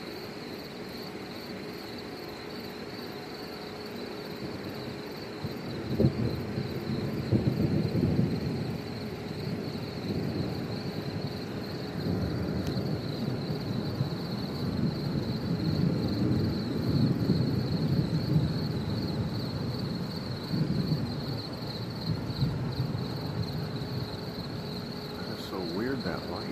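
Thunder from a nearby thunderstorm: a sudden clap about six seconds in, then a low, rolling rumble that swells and fades for some fifteen seconds. A steady chorus of crickets runs underneath.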